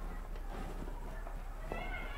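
Quiet room tone with a low hum and a few faint ticks. Near the end a cat meows once, a short pitched call that rises and falls.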